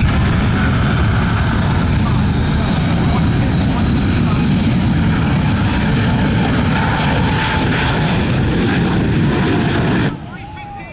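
Shockwave jet truck's three afterburning jet engines running at full power during a high-speed run: a loud, steady roar that cuts off suddenly at the end.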